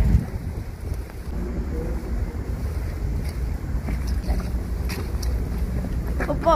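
Wind buffeting the microphone: a steady low rumble with a few faint clicks.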